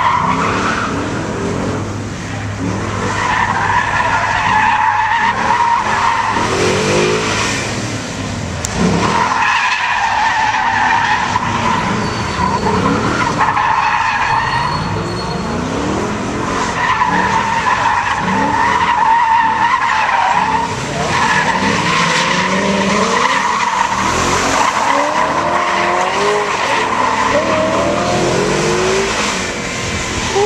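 2012 Ford Mustang 5.0 V8 drifting: the tires squeal again and again in long stretches of several seconds, while the engine revs rise and fall between and under them.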